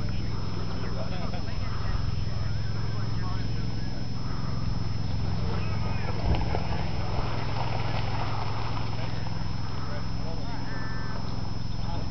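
Indistinct, distant voices over a steady low hum.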